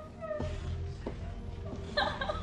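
A woman crying in high, wavering, falling wails that break up into a sob near the end, over a low, sustained music score.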